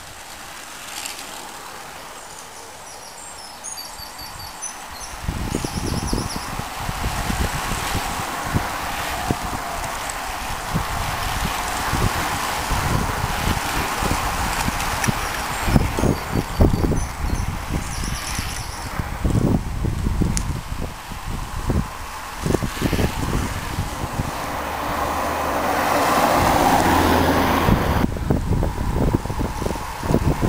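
Road noise as cyclists ride past, with gusts of wind buffeting the microphone from about five seconds in. The sound swells to its loudest near the end as a motor vehicle passes.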